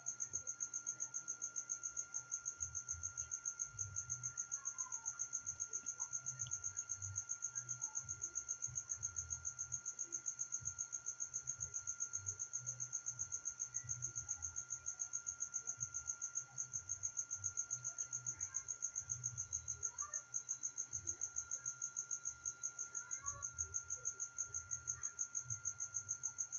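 Crickets trilling steadily in the background: one continuous high-pitched trill with a quick, even pulse, under faint room noise.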